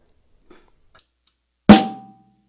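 A single snare drum hit played as a controlled down stroke, with the stick stopped after striking the head. It lands near the end and is followed by a short ring.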